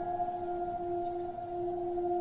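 Background drama score: one steady held tone with its overtone, sustained without change.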